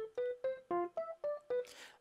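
A short software-keyboard melody from the Xpand!2 plugin playing back: seven short piano-like notes at about four a second, stepping up and down in pitch, stopping about half a second before the end.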